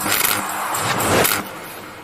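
Whoosh transition sound effects: two rushes of noise about a second apart, then fading out.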